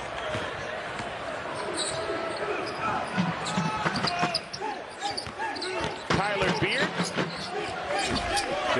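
A basketball being dribbled on a hardwood court, with short sneaker squeaks from players cutting, over steady arena crowd noise.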